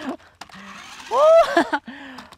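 Small electric motors of a toy remote-controlled stunt car whirring as its wheels spin and slip on a wooden plank, then spin freely in the air. A man's loud exclamation cuts in about a second in.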